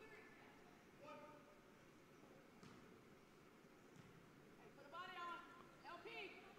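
Near silence in a gym, with faint, distant voices about a second in and again near the end.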